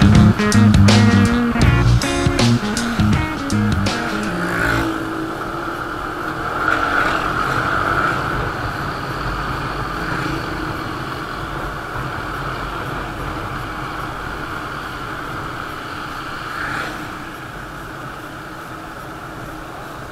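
Background music with guitar and bass for the first four seconds or so, then cutting out. After that, the steady running sound of a motorcycle on the move, engine and wind heard from the rider's onboard camera, swelling briefly about seven and seventeen seconds in.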